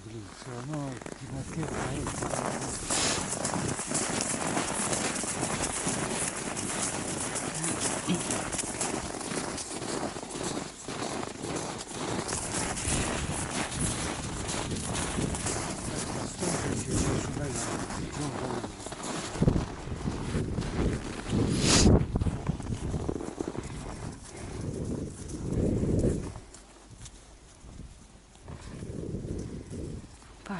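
Footsteps crunching in packed snow as a person walks along a snowmobile track, with clothing rustling. A single sharp knock about two-thirds of the way through is the loudest sound.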